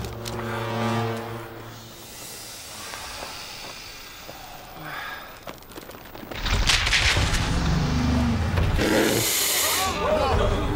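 Film soundtrack: orchestral music holding a chord that fades into a quieter stretch, then about six seconds in a loud deep rumble with a rushing noise, and a burst of high hiss near the end.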